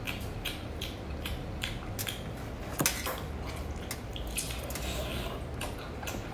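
Close-miked wet mouth sounds of chewing squid: a run of short smacking clicks, a few each second, with one sharper click about halfway.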